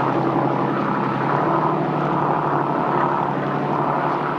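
Engine running steadily: a constant drone under a rushing noise, with no change in pitch.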